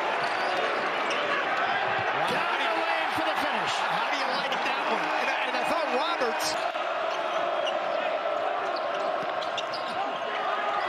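Basketball bouncing on a hardwood court over a steady arena crowd, with the crowd cheering about halfway through as the home team scores.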